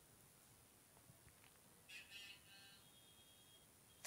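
Near silence, with one faint, brief high-pitched tone about halfway through.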